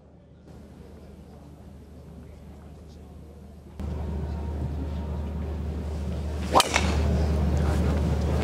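Golf driver striking the ball off the tee: one sharp crack about two-thirds of the way in, over steady outdoor background noise that gets louder about halfway through.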